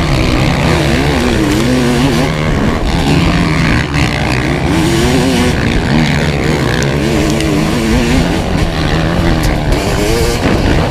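Kawasaki KX500's two-stroke single-cylinder engine racing, heard close up on board, its revs climbing and dropping again and again as it is ridden hard.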